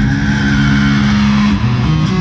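Electric guitar and bass guitar played live through an arena sound system, one long held note that changes to new notes near the end.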